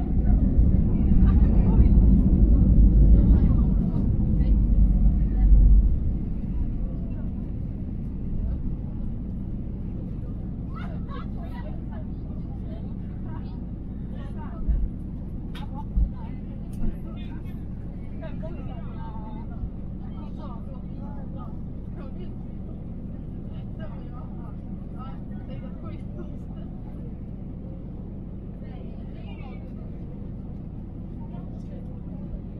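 Airbus A320-family airliner's landing rollout heard from the cabin just after touchdown: a loud low rumble for the first six seconds that eases as the plane slows, then a steadier, gradually fading rumble, with a few short thumps about fifteen seconds in.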